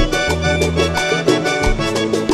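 Instrumental vallenato music: an accordion playing quick melodic runs over a steady bass line and regular percussion strikes, with no singing.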